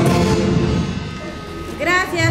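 A live party band's short fanfare fading out during the first second, its drums and instruments dying away. A woman's voice then starts speaking over a microphone near the end.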